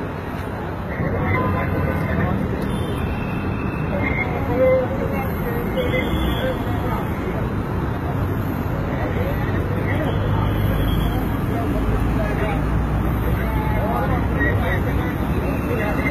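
Indistinct voices talking over a steady wash of road traffic and vehicle noise, with a deeper rumble swelling in the middle.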